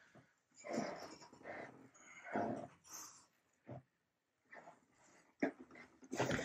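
Faint, short whimpering sounds, like a dog in the room, with a sharp click of a light switch near the end.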